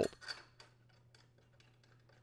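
Faint small metallic ticks and clinks of a mower blade's mounting bolt being threaded back in by hand through the blade support.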